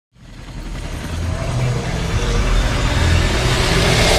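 Intro whoosh effect: a rushing noise with a deep rumble underneath, swelling steadily louder.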